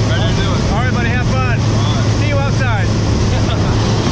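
Jump plane's propeller engine droning steadily inside the cabin, with voices calling out over it for the first few seconds.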